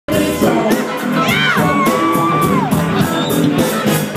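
Live blues band playing: drums keeping a steady beat about four strokes a second under bass, guitar and keyboard. About a second in, a long high note slides up, holds, and falls away near the three-second mark.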